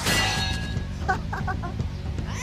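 Cartoon 'pang' impact sound effect: a sudden ringing metallic hit that fades over about half a second. About a second in come three short clucking calls, over background music.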